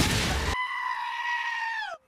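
A loud burst of noise, then one long high-pitched cry that holds steady, slides down in pitch near the end and cuts off.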